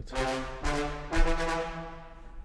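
Sampled brass ensemble from Native Instruments' Brass Ensemble library for Kontakt, played on its staccato articulation: three chords in a row, each about half a second long, the last held a little longer.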